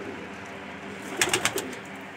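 Domestic pigeons cooing softly. About a second in comes a short burst of rustling and clicking as a young pigeon is handled and its wing is opened.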